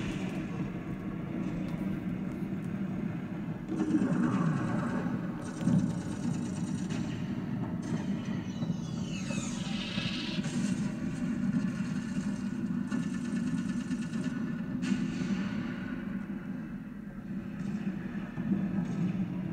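Dark sci-fi soundtrack or sound-effects bed: a steady low rumbling drone, with a falling swept tone about four seconds in and a higher sweeping tone around nine to ten seconds.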